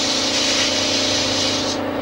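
Electric drain-cleaning machine running, clearing a blocked toilet drain: a steady motor hum with a hiss over it, the hiss cutting off near the end while the hum carries on.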